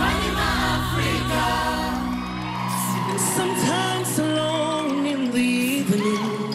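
Youth choir singing in layered voices, held and gliding notes over a low sustained note that drops out a little under halfway through.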